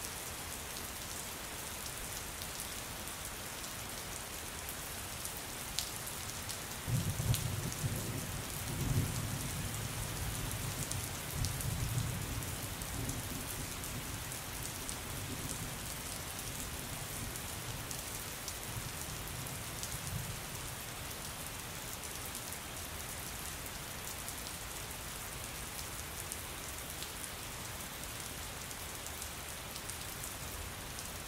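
Steady rain, an even hiss with scattered sharp drop ticks. About seven seconds in, a low roll of distant thunder swells up, rumbles for several seconds and fades away.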